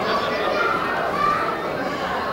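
Crowd of adults and children chattering and calling out at once in a large hall, a steady babble of overlapping voices.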